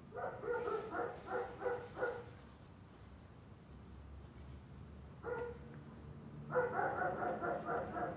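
A dog barking in quick runs: about six barks in the first two seconds, a single bark about five seconds in, and another run of barks near the end.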